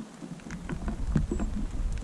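Light rain pattering, with a low rumble coming in about half a second in and holding steady.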